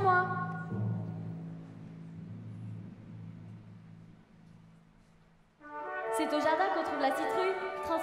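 A low held chord in the orchestra, brass among it, dies away over about four seconds. After a moment of near silence, music with voices starts suddenly about two seconds before the end.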